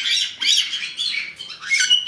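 Caique parrots squawking in a string of short, high-pitched calls, with a steady whistle-like note near the end.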